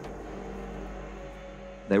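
A steady low rumble with a faint hum under it, holding at an even level with no distinct events.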